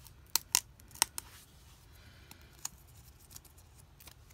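Fingertips and nails picking at a self-adhesive stamp on a glossy yearbook page, trying to lift it off: four sharp clicks in the first second or so and one more past the middle, with faint paper rustling between.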